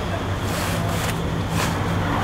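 Steady low mechanical hum, like an engine running nearby, with faint rustling of vinyl fabric being handled.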